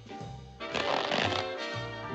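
Cartoon background music with walking bass notes, and a brief scratchy, rustling sound effect a little after half a second in, lasting under a second.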